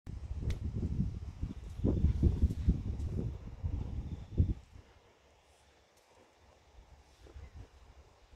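Wind rumbling on a phone microphone with a few bumps, dying away about four and a half seconds in.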